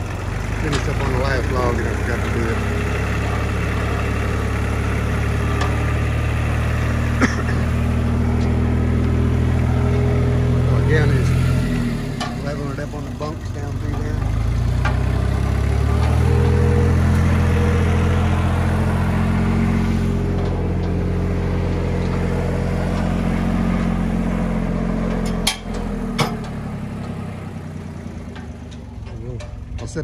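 An engine running steadily throughout. Its speed drops about twelve seconds in and picks back up a few seconds later. Two sharp knocks come close together about twenty-five seconds in.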